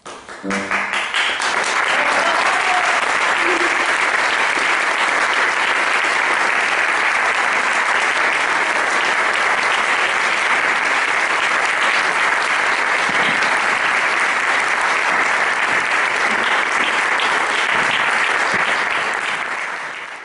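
Audience applause, starting with a few claps and filling out about a second in, then holding steady before fading away at the very end.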